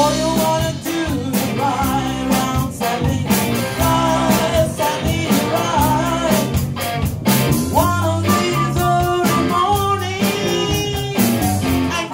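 Live band playing a soul cover, with electric guitars, keyboard and a drum kit keeping a steady beat while a woman sings into a microphone.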